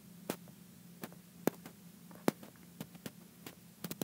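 Stylus tapping on a drawing tablet during handwriting: irregular sharp clicks, a few each second, over a steady hum.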